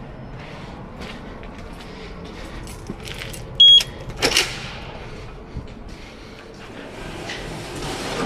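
A short, high electronic beep, followed about half a second later by the sharp clack of a glass entrance door being pulled open by its metal handle, over low steady background noise.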